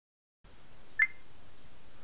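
Low room tone with one very short, high-pitched beep about a second in.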